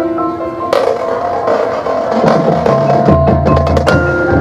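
High school marching band playing: a held chord, a loud accent about a second in, then quick percussion strikes and low bass notes building toward the end.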